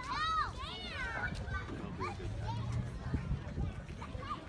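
Children's voices shouting and chattering, with a couple of high-pitched rising-and-falling shouts in the first second, then scattered talk.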